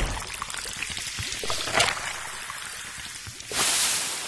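Carbonated cola poured over ice in a glass, fizzing and crackling with small clicks, with a louder burst of hissing near the end.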